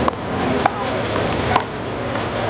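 A handball smacking hard surfaces three times, sharp and short, the small rubber ball bouncing on the concrete court and wall. The hits come right at the start, just over half a second in, and about a second and a half in.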